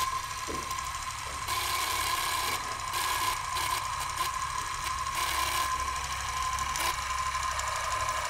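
Old cine film projector running: a steady mechanical whir with a fast fine clatter and a thin steady whine over it, starting abruptly.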